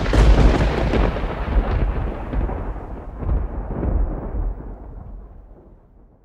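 Thunder-like boom sound effect: a sudden loud crack that rolls on as a deep rumble with a few swells, fading out near the end.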